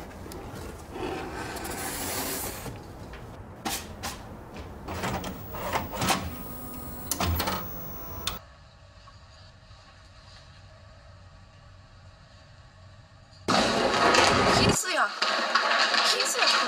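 Handling noises, rustling with sharp clicks and knocks, as a cardboard box and a TV-VCR are handled. About eight seconds in this drops suddenly to a faint steady hum with a few thin tones. Near the end, loud women's voices from grainy camcorder footage cut in abruptly.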